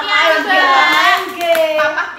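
Women's voices in drawn-out, sing-song tones, ending on a long held note that falls in pitch, with a few sharp taps about a second in.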